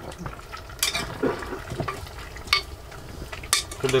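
A spoon stirring food reheating in an enamel pot, with a few sharp clinks of the spoon against the pot: about a second in, midway, and a couple near the end.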